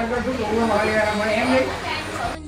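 Several people talking at once: a group's conversation.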